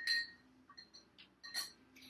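A metal spoon clinking lightly against kitchenware as tea is stirred. There are a few short ringing clinks and ticks, the loudest right at the start and another about one and a half seconds in.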